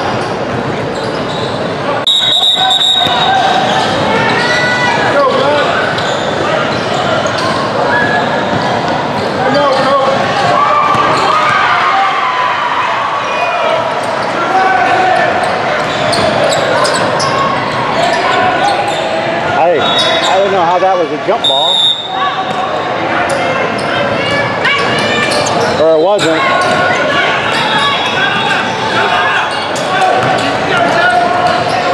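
Indoor basketball gym ambience: many overlapping voices chattering in a large echoing hall, with a basketball bouncing on the hardwood court. Two brief high-pitched tones stand out, about two seconds in and again past the twenty-second mark.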